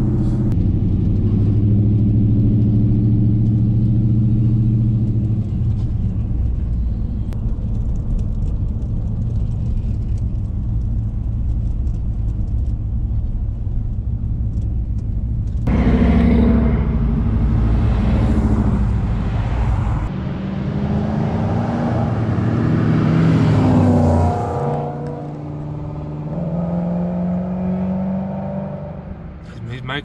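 A pickup truck's engine running steadily at cruise, heard from on board. About halfway through, the sound cuts to roadside, where classic cars pass by one after another, their engine notes rising and falling, and it grows quieter after the last one goes by.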